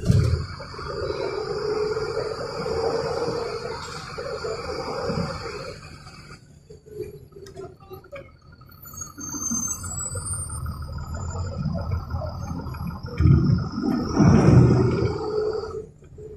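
Mercedes-Benz 1570 bus engine heard from inside the cabin while the bus drives, a steady low rumble with a high whine above it. It eases off and goes quieter about six seconds in, then pulls harder and gets louder near the end.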